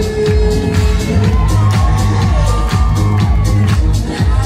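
Loud dance music with a steady beat and heavy bass, with a melodic vocal line over it.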